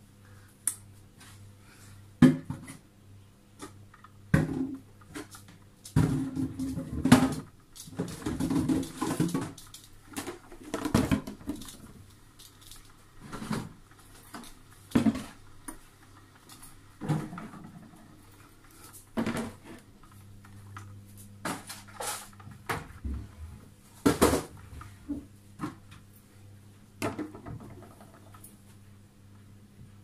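Drip coffee maker brewing: irregular gurgling and sputtering bursts every second or two over a low steady hum as the hot water is pushed through.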